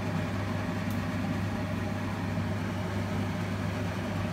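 A steady low hum with a faint hiss above it, unchanging throughout, like a motor running in a kitchen.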